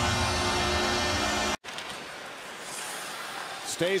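Loud arena goal celebration: music with steady held tones over a cheering crowd, cut off suddenly about a second and a half in. After the cut comes a quieter, steady murmur of an arena crowd during play.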